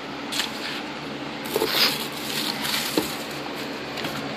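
Rustling and crinkling of packaging as boxed action figures are handled in and out of a cardboard shipping box with bubble wrap. A short sharp knock comes about three seconds in.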